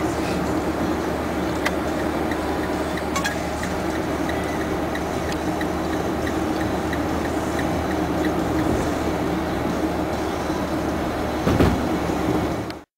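Steady road and engine noise of a car cruising on a highway, heard from inside the cabin.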